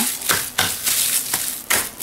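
Plastic bags crinkling as hands press and handle bags of ground meat, about half a dozen short crackles over a steady hiss.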